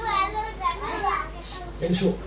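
Children's voices calling and chattering in the background, high-pitched and strongest in the first second, then a man's voice says a single word near the end.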